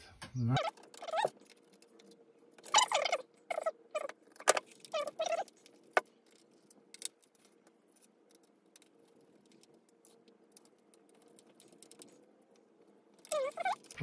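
Gloved hands handling and screwing together a small plastic LED lamp: several short squeaks of nitrile gloves rubbing on the plastic in the first few seconds, light clicks and rattles of the parts and a precision screwdriver, with a few sharp ticks, then quieter handling toward the end.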